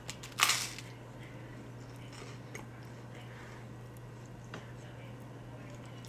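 A crisp bite into a toasted Uncrustable sandwich about half a second in, followed by quiet chewing over a steady low hum.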